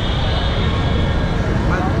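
Steady rumble of dense street traffic of motorbikes, scooters and auto-rickshaws, heard from a moving two-wheeler, with wind buffeting the microphone.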